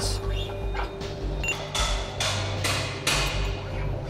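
Background music with a steady low bass, over which about four sharp metallic knocks come roughly half a second apart around the middle, as steel lower link pins are worked out of the side shift frame.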